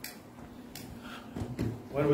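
A few light clicks and knocks of objects being handled and set down on a wooden altar, spread across the moment.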